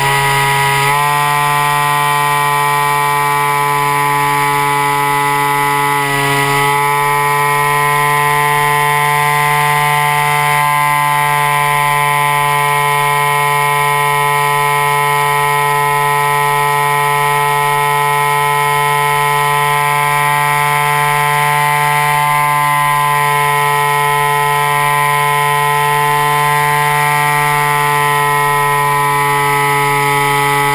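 RC model plane's motor and propeller heard up close from on board, running steadily at a constant, whining pitch. The pitch dips briefly just after the start and again about six seconds in as the throttle eases and comes back.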